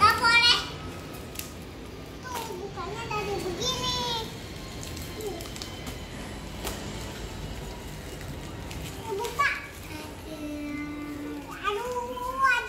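Young children's voices: high-pitched squeals and short exclamations, loudest right at the start and again about four seconds and nine seconds in, with a few sharp clicks from handling in between.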